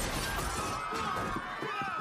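Film sound effect of glass shattering and debris crashing, a dense continuing crash with a thin high ringing tone held through it.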